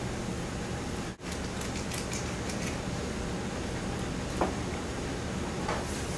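Steady low background hum of a teaching kitchen, with a few faint light clicks and one small knock a little past the middle. The sound drops out for an instant just after a second in.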